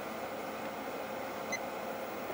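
Steady whir of a running fan, with a faint short blip about halfway through.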